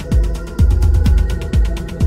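Techno music: a steady four-on-the-floor kick drum, about two beats a second, under fast, even, ticking hi-hats and a held synth drone.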